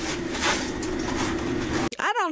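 Fast-food kitchen noise at a fry station: a steady hum of fryer equipment and the exhaust hood, with a brief rustle about half a second in as fries are scooped into a carton. The sound cuts off suddenly just before the end.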